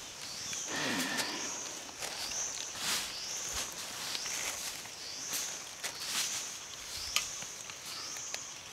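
A repeating high-pitched animal call, each one rising and then falling, about five every four seconds. A few sharp clicks fall among the calls.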